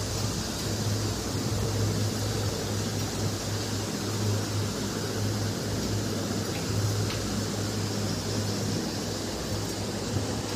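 Steady hiss with a low hum underneath, like a machine or fan running in the room.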